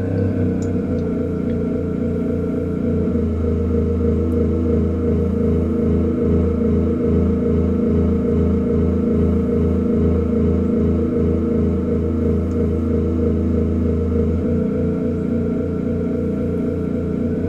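Synthesizer MIDI playback of UV-B sensor data turned into music, set to a synth-strings voice. The notes repeat rapidly and evenly, almost all on the keyboard's lowest keys, so they merge into a steady low hum whose level swells and dips as the readings vary with passing clouds.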